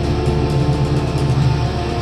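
Live metal band playing loud, heavily distorted electric guitars with bass, holding dense sustained chords.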